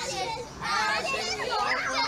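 Several young children's voices overlapping as they play together in a swimming pool, many high calls and shouts at once.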